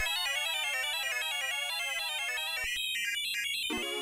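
Roland JX-10 Super JX analog polyphonic synthesizer playing a fast run of short, bright notes that step up and down in a quick repeating pattern. Its oscillator waveform is being switched in real time, and the tone turns hissier and brighter for about a second near the end.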